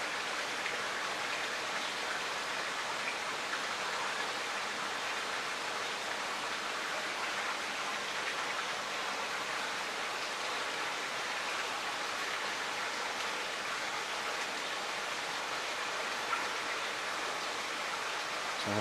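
Steady rush of splashing, falling water from a koi pond's filtration system running.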